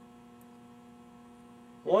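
A steady electrical hum.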